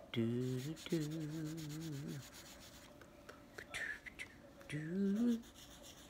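A woman singing a wordless tune, holding one wavering note for about two seconds near the start and a short rising note near the end, while a drawing tool rubs and scratches on paper.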